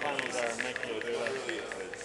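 Rapid, light, even clicking of a solar-powered eggshell sculpture, its eggshell halves tapping on their wire stalks, under people talking.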